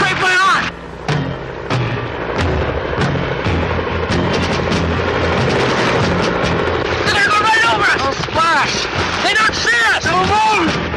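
A dramatic film soundtrack: music score with shouting voices over it, the shouts strongest in the last few seconds.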